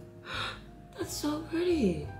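A woman's wordless, breathy vocal sounds: a short breath about a third of a second in, a sharper breath at about one second, then a hummed sound that rises and falls in pitch.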